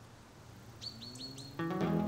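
Four quick, high bird chirps about a second in, then music with plucked guitar starts near the end.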